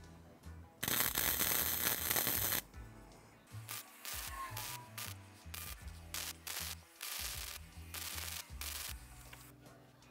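Stick (arc) welding: the electrode's arc crackles in one long run of about two seconds, then in a string of shorter bursts with breaks as a bead is laid around a steel sprocket hub.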